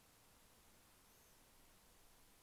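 Near silence: only a faint, steady hiss between phrases of speech.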